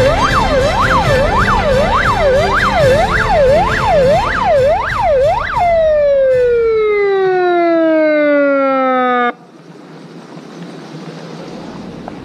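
A siren sweeping rapidly up and down over music with a steady beat. About halfway through it turns into one long falling tone that winds down and cuts off suddenly, leaving a quieter steady hiss.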